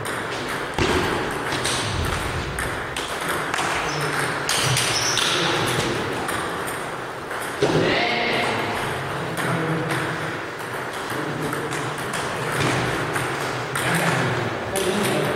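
Table tennis balls clicking off bats and tables in rallies, many quick clicks, with a louder knock about a second in and another just past halfway.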